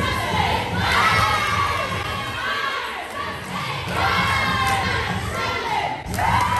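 A group of young female cheerleaders screaming and cheering together in excitement at a stunt. The shouting comes in two swells, dipping about halfway through.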